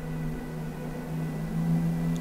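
A low steady hum made of several held tones.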